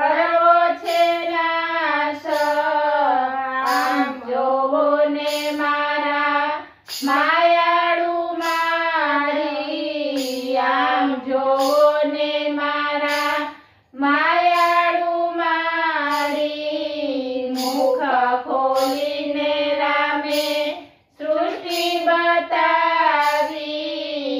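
Women's voices singing a Gujarati devotional bhajan to Ram together in unison, in long held phrases with short pauses for breath about every seven seconds.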